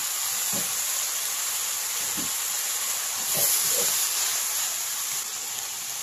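Cuttlefish tentacles sizzling in hot garlic oil in a wok with onion and green peppers, a steady frying hiss that swells slightly about halfway through.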